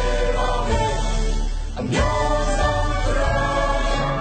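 A song playing: voices singing long held notes over instrumental backing with a steady low bass, a new phrase starting about every two seconds.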